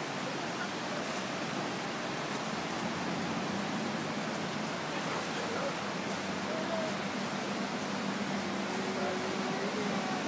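Steady, even rush of the Niagara River rapids in the gorge below, a constant noise with no rhythm.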